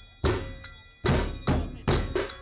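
Large double-headed drums struck with padded beaters: a few heavy, ringing strikes, spaced out at first and coming closer together in the second half.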